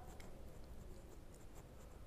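Near silence: faint room tone with a few soft, irregular ticks.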